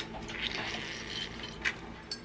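Liquid being poured into a metal cocktail shaker, a short soft trickle, followed by a light click.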